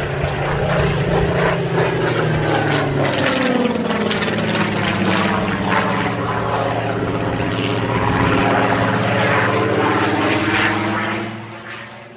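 Single-engine piston propeller aircraft flying past, its engine note steady and then dropping in pitch about three seconds in as it passes. The sound fades out near the end.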